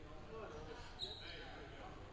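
Faint sound of a basketball game in a gym: a ball bouncing on the hardwood court and distant voices, with a brief high squeak about a second in.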